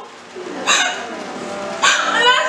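A girl sobbing, with two sharp, noisy gasps about a second apart.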